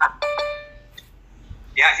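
A single electronic notification chime: one bell-like tone that rings out and fades within about a second.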